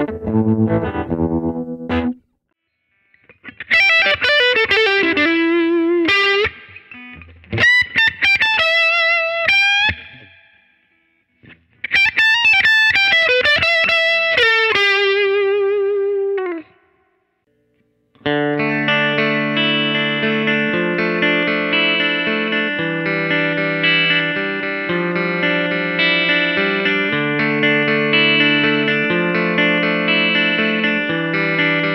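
Electric guitar played through a Victoria Regal II tweed tube combo amp with a 15-inch speaker, lightly overdriven. It opens with chords, then plays two single-note lead phrases with wavering vibrato and downward slides, separated by short pauses. From just past the middle it plays ringing, sustained chords to the end.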